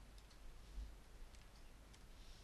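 Near silence: quiet room tone with a few faint clicks at the computer, in two quick pairs.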